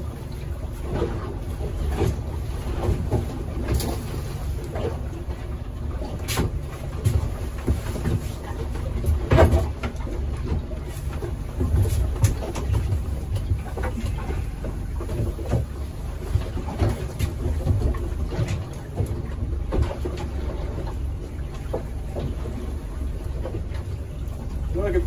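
Steady low rumble of wind and sea around a small open boat, broken by a few sharp knocks as a herring net and its marker buoy are handled over the stern.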